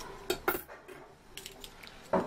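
Light metal clinks and clicks from small steel parts of a sewing-machine binder attachment and hand tools being handled. Two sharper clicks come about half a second in, then a few fainter ticks later.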